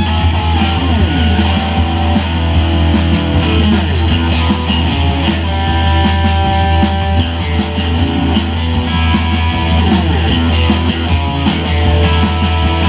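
Live rock band playing loud: electric guitar with notes that slide down in pitch several times, over bass guitar and drums with steady cymbal hits.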